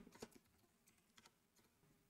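Near silence with a few faint computer keyboard keystrokes: a short cluster in the first half-second and a couple more about a second in.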